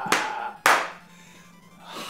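Two loud hand claps about half a second apart, a man clapping his hands while laughing, over faint background music.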